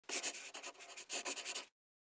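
Scratching sound of writing on paper, in two quick runs of strokes, that stops abruptly, heard as a logo-intro sound effect.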